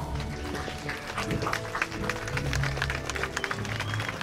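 Background music with steady sustained bass notes, and a crowd applauding over it, the clapping thickest about one to two seconds in.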